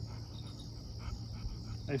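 Steady high-pitched insect chorus trilling without a break, with a low steady hum underneath.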